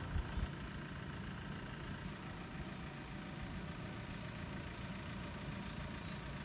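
Steady low engine-like hum at a constant level, as of a motor idling nearby, with a faint thin high tone above it.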